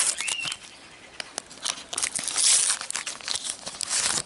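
A paper sticker packet being torn open and crinkled by hand. There are bursts of crackling near the start and again about two seconds in.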